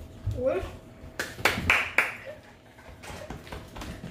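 A person's voice makes a short rising sound, followed about a second in by several sharp, breathy hisses in quick succession.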